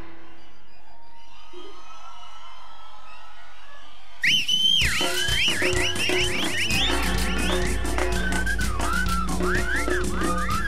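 A live cumbia band pauses, leaving a steady crowd noise for about four seconds. Then the band comes back in loudly with a high, whistle-like lead melody that slides up and down in pitch over a steady beat.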